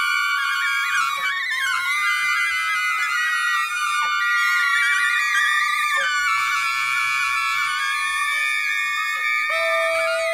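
A jazz orchestra's high woodwinds, flutes and soprano saxophone, hold overlapping high notes in a dense, slowly shifting cluster with little low end. A lower steady note enters near the end.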